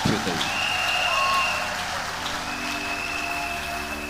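A congregation applauding: a dense, even clatter of many hands clapping, with a few raised voices mixed in.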